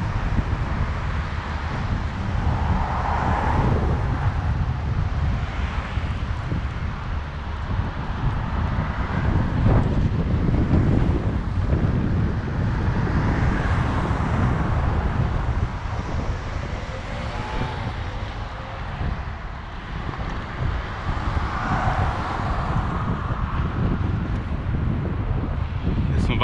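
Wind buffeting the microphone of a camera moving along a street: a steady low rumble that swells and eases, with road traffic sounds mixed in.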